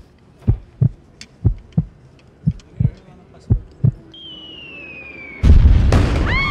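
Deep thumps in pairs, about one pair a second, then a high whistle falling slowly in pitch, cut off near the end by a loud pyrotechnic explosion from a staged outdoor show.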